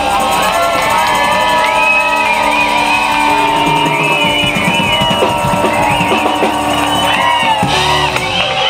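Live funk band playing a groove: drum kit, electric guitar and keyboard, with hand tambourines shaken along. The music is loud and continuous, with no break.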